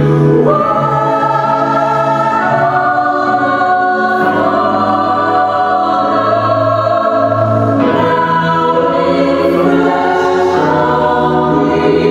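A vocal trio of two women and a man singing a slow piece in harmony, holding long notes that change together every few seconds.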